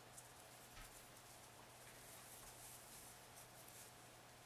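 Near silence: faint scratching and rustling of yarn drawn through the work with a crochet hook as single crochet stitches are made, over a low steady hum.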